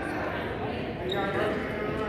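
Indistinct chatter of several people talking at once in a gymnasium.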